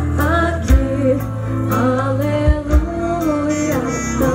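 Live Christian worship band playing through a PA: a woman singing lead over electric guitar, keyboard and drums, with kick-drum thumps about a second in and again halfway through.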